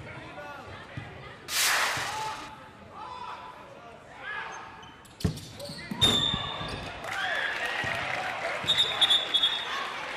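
Basketball game sounds in a gym: the ball bouncing on the hardwood floor, with scattered crowd and bench voices. There is a short burst of noise about a second and a half in, sharp knocks just after five and six seconds, and brief high shrill tones near six and nine seconds.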